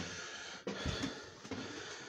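Quiet indoor room sound with handling noise from a phone being carried while walking, and a sharp click about two-thirds of a second in.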